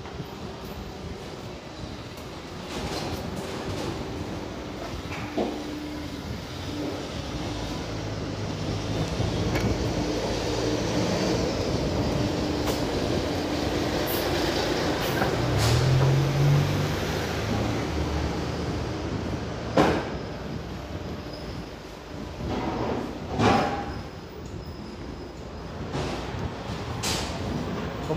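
A city bus drives past close by on a narrow street. Its engine grows louder, is loudest about fifteen seconds in, then fades away, with a few sharp knocks afterwards.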